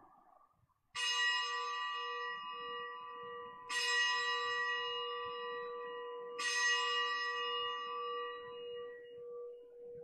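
Consecration bell struck three times, each stroke a few seconds apart and left to ring out and fade, marking the elevation of the consecrated host.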